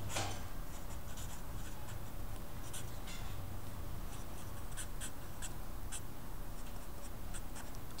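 Felt-tip marker writing on paper: short, faint scratching strokes of the tip as the words are written, over a low steady room hum.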